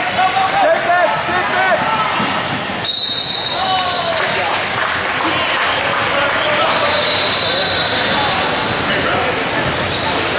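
Basketball game in a gym: the ball bouncing on the hardwood, sneakers squeaking, and players and spectators calling out, with the squeaks densest during the first couple of seconds of the fast break.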